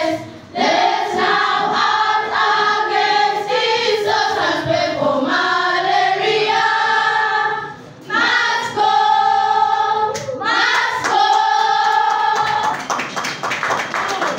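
A group of children singing together in phrases of long held notes, with short breaks between phrases. Clapping comes in near the end.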